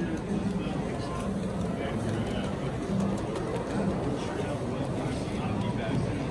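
Indistinct voices of people milling around a model train show, with the steady running rumble of an S gauge model steam locomotive and its freight cars rolling past underneath.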